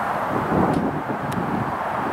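Strong gusty wind buffeting the camera's microphone: a steady rushing rumble that swells about half a second in.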